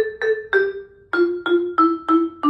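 Vibraphone played with mallets: a slow line of single struck notes, each ringing out and fading, stepping downward in pitch with a short pause about a second in.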